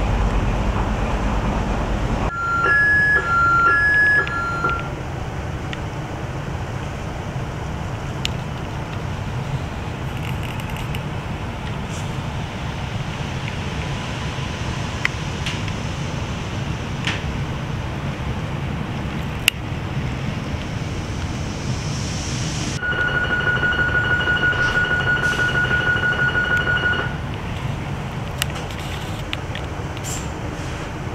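Electronic signal tones of a Renfe Cercanías commuter train stopped at a station, heard inside the carriage over its low hum. A two-note chime alternates between two pitches a few times just after the start, and much later a single steady beep holds for about four seconds, the train's door warning.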